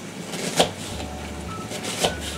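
Kitchen knife slicing lengthwise through an onion and striking the plastic cutting board: one sharp cut-and-knock about half a second in.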